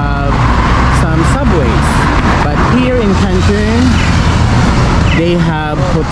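Busy street traffic: cars, a van and a city bus driving past with a steady low rumble, and voices talking over it.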